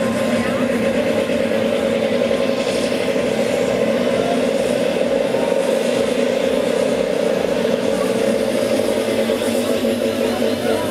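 Loud electronic dance music from a festival main-stage sound system, heard from within the crowd, with several steady held notes sustained throughout.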